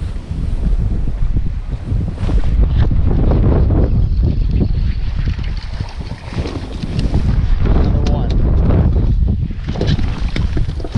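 Strong wind buffeting the microphone on an open boat, with choppy water slapping against the hull.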